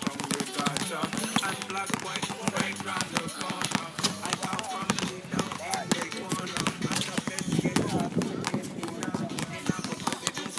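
Several basketballs being dribbled on a hard outdoor court: many quick, overlapping bounces at an irregular rhythm throughout.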